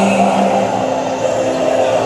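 Sustained instrumental chords accompanying a slow sung hymn, held between two sung lines. The singer's last held note trails off about half a second in.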